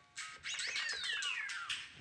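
Electronic sweep effect played from a DJ setup: several pitches glide down together from high to middle pitch over about a second, after a few brief steady beeps.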